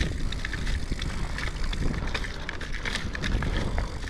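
Mountain bike riding down a dirt forest trail: tyres running over the dirt and roots with many quick rattles and clicks from the bike, over a steady low rumble of wind on the camera's microphone.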